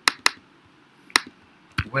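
A few sharp, isolated clicks of computer keyboard keys being typed, four in all, spaced unevenly.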